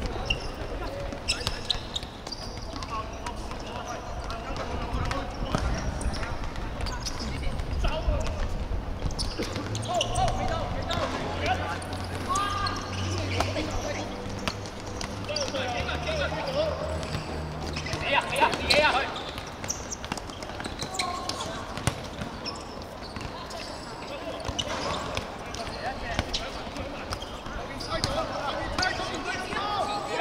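Players shouting and calling out during a football game on an outdoor hard court, with repeated thuds of balls being kicked and bouncing on the court surface.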